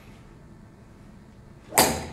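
A golf club swung fast through the air: one short swish near the end.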